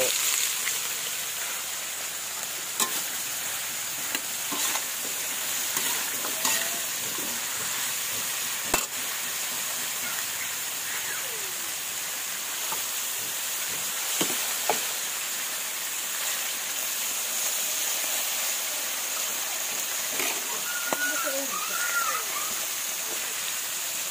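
Hot cooking oil sizzling steadily in a metal pan and wok as fish and vegetables fry, with a few light clicks of a metal spatula against the pan.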